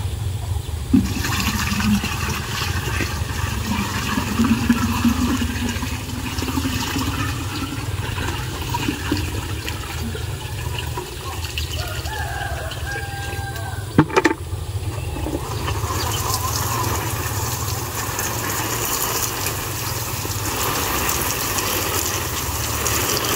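Water poured from a bucket into a plastic watering can, then sprinkled from the can's rose onto seedling leaves, a brighter hiss for the last several seconds, over a steady low rumble.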